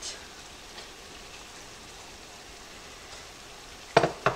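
Melted butter and ground beef sizzling softly and steadily in a skillet. A sharp knock of the wooden spoon against the pan comes at the very end.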